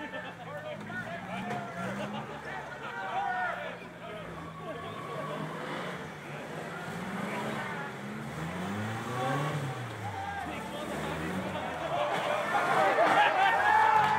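Off-road race truck engines revving up and down again and again, mixed with spectators' voices talking and calling out. Engines and voices get louder over the last couple of seconds.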